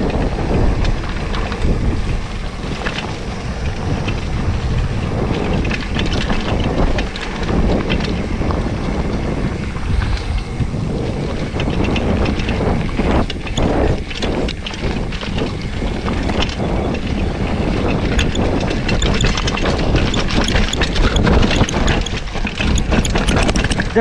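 Mountain bike riding fast down a rough dirt trail: steady wind rush on the microphone over the tyres' rolling noise, with constant rattling and knocking from the bike over bumps and roots.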